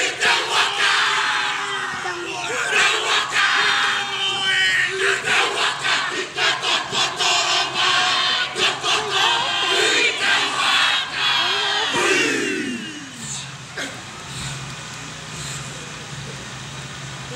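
A group of men chanting a Māori haka: loud shouted chanting in unison punctuated by sharp slaps, ending about thirteen seconds in with a long falling cry, after which the sound drops to a quieter murmur.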